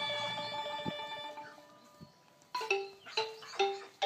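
Background music on a xylophone-like mallet instrument: struck notes ring out and fade, a short near-silent pause about two seconds in, then a run of struck notes at about two or three a second.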